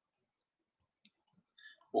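Four faint, sharp clicks of a computer mouse, spaced irregularly over two seconds, and a word of speech right at the end.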